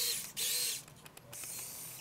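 Electric finger motors of an Open Bionics Hero bionic hand whirring twice in quick succession as the fingers move, each whir about a third of a second long, followed by fainter motor sounds.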